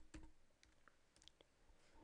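Near silence with a few faint computer keyboard key clicks, mostly in the first half second, as numbers are typed into a spreadsheet.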